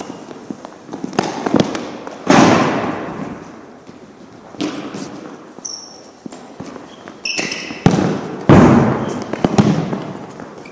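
A futsal ball being kicked, struck and bounced on a gymnasium floor. Lighter knocks are scattered through, with two hard strikes about two seconds in and near the end that echo around the large hall. There are a couple of short high squeaks.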